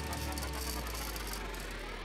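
Sound effect for an animated title logo: a low rumble slowly fading, with a dense sparkling crackle over it for the first second and a half.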